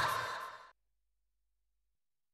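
The end of an electric guitar cover played over its backing track: the last chord rings and fades away within the first second, then complete silence.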